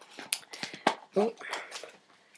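Handling of a boxed set of small board books: a few sharp clicks and taps, with a short spoken "oh" in between.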